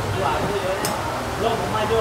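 Faint background chatter of voices over a steady low hum, with one short, sharp click about a second in.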